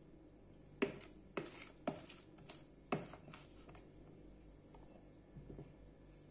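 A metal spoon clicking and scraping against a plastic container of thick cake batter: about six light clicks over the first three seconds, then faint handling noise.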